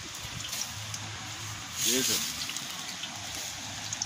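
Shallow stream running over rocks, a steady rush of water.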